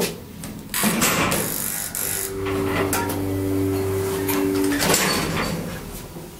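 1983 Geijer-Hissi hydraulic elevator set going by a floor-button press: a click, then a rough mechanical rumble for about a second. A steady two-tone hum follows for about two and a half seconds and stops with a clunk near the end.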